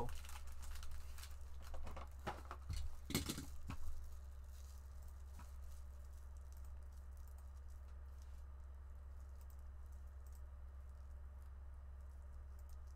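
Foil-wrapped Panini Mosaic basketball card packs being handled and set down on a table, crinkling and tapping, for the first few seconds. After that only a steady low hum remains, with faint scattered clicks.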